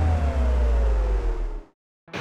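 Power-down sound: a low hum and a whine that winds down in pitch, then cut off suddenly into silence, like the electricity failing in a blackout.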